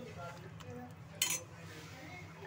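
Steel cooking pots and utensils clinking, with one sharp metallic clink a little over a second in, over a steady low hum.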